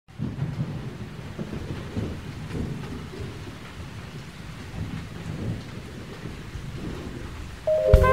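A low, uneven rumbling noise with no clear pitch. Just before the end a sustained musical chord comes in.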